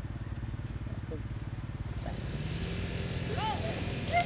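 A small engine running steadily with a fast beat, which picks up slightly about two seconds in, typical of a lure-coursing lure machine's motor. A few short, high, rising-and-falling cries come near the end.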